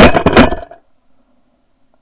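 Shotgun fire at doves: a sudden, very loud blast at the very start with a second sharp crack under half a second later, both dying away within about a second.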